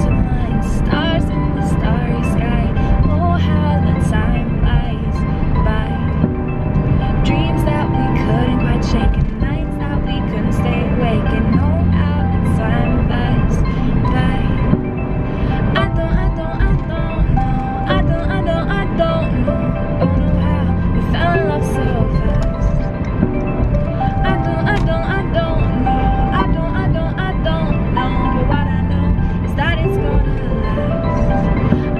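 A woman singing along with backing music.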